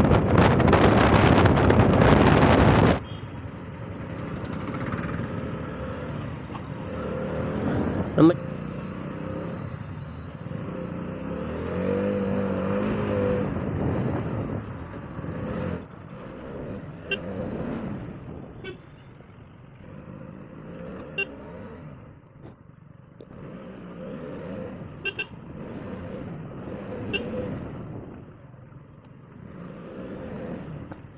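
Heavy wind noise on the microphone of a moving KTM Duke 125 motorcycle, cutting off abruptly about three seconds in. Then quieter engine and town-traffic noise, with vehicle horns honking several times.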